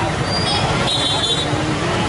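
Steady street noise: road traffic with the indistinct chatter of a crowd.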